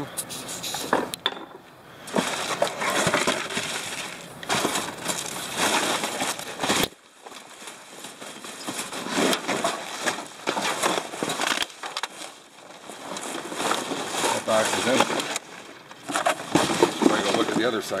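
Plastic wrap, cardboard and packing paper crinkling and rustling in irregular bursts as gloved hands dig through and shift trash, with quieter gaps between handfuls.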